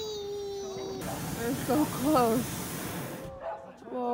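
Hot-air balloon's propane burner firing overhead: a loud hiss that starts suddenly about a second in and cuts off after a little over two seconds.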